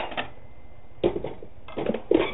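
A single knock about a second in, then a few light clatters near the end, from a kitchen container or dish being handled.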